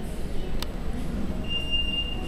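An elevator hall call button being pressed gives a short, steady, high-pitched beep about a second long, over a steady low rumble. A sharp click comes about half a second in.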